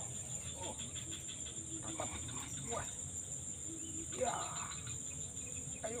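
Insects trilling in one steady, high-pitched drone that does not let up, under a man's short exclamations.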